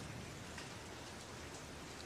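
Faint, steady, even background hiss with no distinct events.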